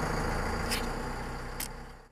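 Vehicle engine idling, heard from inside the cab, with two short sharp clicks a little under a second apart; the sound fades away near the end.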